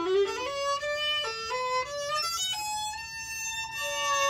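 Violin being bowed in a short tryout of single stepped notes, mostly climbing in pitch, giving a really dull tone. It is a playing check of the instrument after a crack repair done from the outside.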